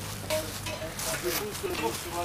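People talking in the background over a steady low hum, with bursts of crackling noise about a second in.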